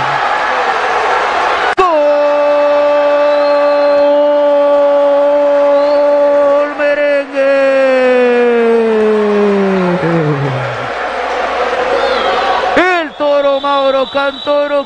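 A male football commentator's long drawn-out goal cry ("Gooool") that starts suddenly, holds one high note for about five seconds, then slides slowly down in pitch and dies away. The start is noisy, and fast excited commentary begins near the end.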